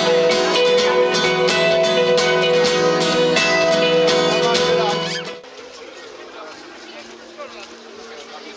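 Band music with guitar and a steady beat stops abruptly about five seconds in. It gives way to the quiet murmur of a crowd talking.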